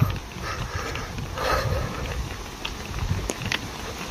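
Calves walking on a paved road: a few faint hoof clicks on the concrete over a low rumbling noise.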